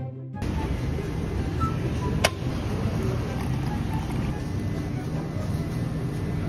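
Steady background noise inside a convenience store, with one sharp click about two seconds in.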